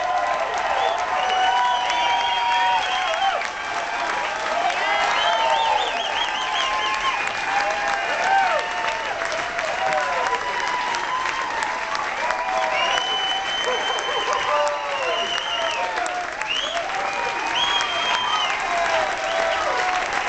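Audience applauding and cheering loudly as the band finishes, with many high whistles over the clapping.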